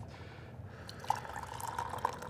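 Tea being decanted from a clay gaiwan into a glass pitcher: a faint trickle of liquid falling and splashing into the glass, with a light click about a second in.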